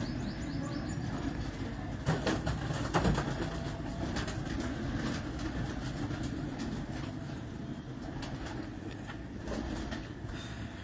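Domestic pigeons cooing steadily, with a couple of sharp knocks about two and three seconds in.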